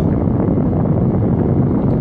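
Steady low rumbling noise inside a car cabin, without a break or change.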